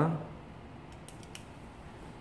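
Quiet room tone with a few faint, short clicks about a second in, the last slightly louder.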